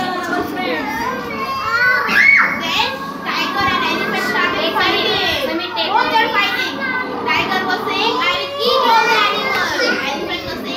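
A room full of young children chattering and calling out at once, many overlapping voices, with a high rising squeal about two seconds in.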